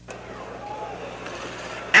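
Racetrack background noise: a steady rushing haze with a faint distant voice, cutting in suddenly and growing slightly louder.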